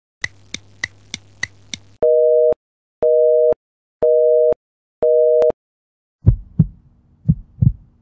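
Edited-in sound effects: a run of six quick clicks, then a telephone busy signal, four half-second beeps a second apart, each two tones sounding together. After that come low thumps in pairs, about once a second, like a heartbeat.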